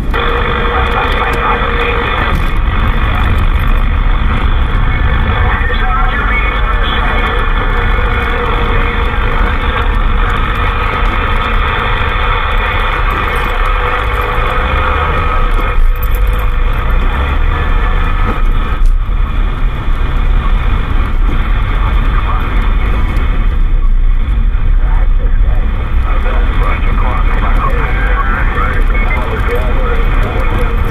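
President Lincoln II+ CB radio receiving on lower sideband on channel 38: steady static hiss with faint steady heterodyne whistles and garbled, unintelligible sideband voices from distant stations on the band. Under it is the low rumble of the moving vehicle.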